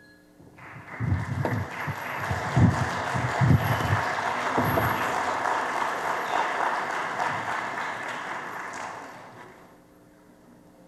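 Audience applause that starts about half a second in and fades away near the end, with a few low thumps in its first half.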